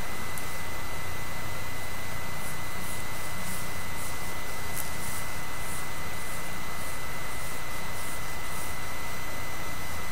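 Steady hiss with a thin high whine, the recording's own background noise, with faint, irregular scratchy strokes of a comb being worked through hair to tease it.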